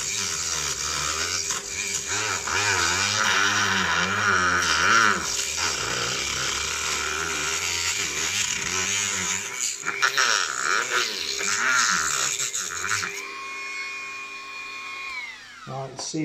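Dremel rotary tool cutting through the plastic of a microphone case: the motor's pitch wavers under load over a gritty cutting noise. About thirteen seconds in the cutting stops and the tool runs free with a steady whine, then winds down in falling pitch as it is switched off near the end.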